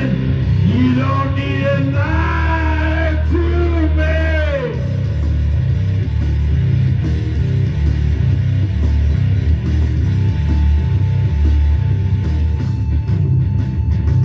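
Heavy hard rock song: a male voice sings over distorted guitar, bass and drums for the first few seconds, then the band plays on without vocals, with a held guitar note in the second half.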